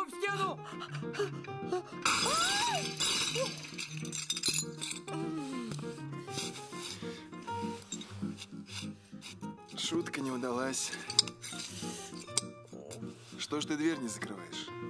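Background music, with a loud crash of crockery shattering on a tiled floor about two seconds in, followed by clinks of broken pieces. Short wordless cries rise over the crash, and another comes near the end.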